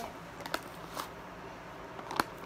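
Plastic Starburst Gummies candy bag rustling softly as hands reach in for gummies, with a couple of short crinkles about half a second and one second in.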